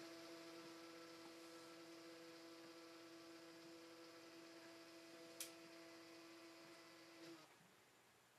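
Faint, steady motor hum of the Brookstone iConvert picture frame's built-in photo scanner as it feeds a print through and scans it, with one short click about five seconds in. The hum cuts off shortly before the end as the scan finishes.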